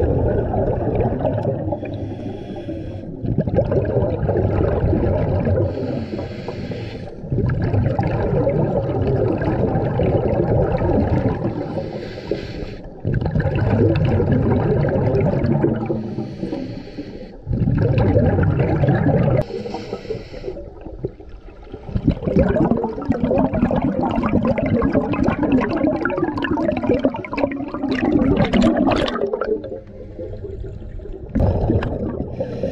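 Scuba regulator breathing heard underwater: a short hiss on each inhale, then a longer, louder burst of bubbling exhaust on each exhale, repeating about every four to five seconds.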